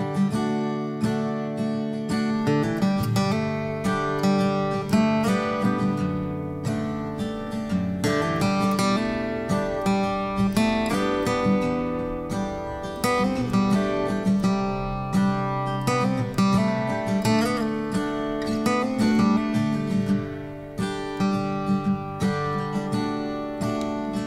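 Background music: acoustic guitar playing, with plucked and strummed notes.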